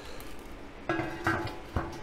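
Steel lid of a Pit Barrel Cooker Junior drum smoker clanking as it is handled: a metallic knock about a second in that rings on briefly, then a second sharper knock near the end.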